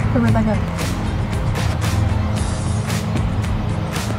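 Background music with a steady bass line running under the scene.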